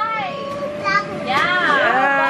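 Young children playing and calling out in high-pitched voices, the voices loudest near the end.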